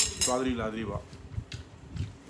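Metal chopsticks clinking against a ceramic bowl: a sharp ringing clink at the start, then a couple of lighter taps.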